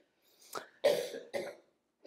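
A person clearing their throat in three short, rough coughs.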